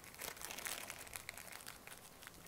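Scissors snipping through the bristles of a half-inch chip brush, trimming them short: a faint run of small, crisp crunching cuts.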